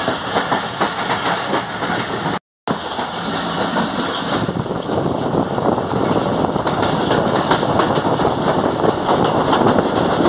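Passenger train running at speed: a steady rumble and clatter of carriage wheels on the rails, heard from an open carriage door. A brief gap of silence falls about two and a half seconds in.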